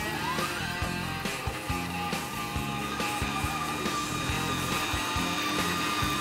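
Bosch stand mixer's motor spinning up with a rising whine, then running steadily as it mixes tart dough. Background music plays underneath.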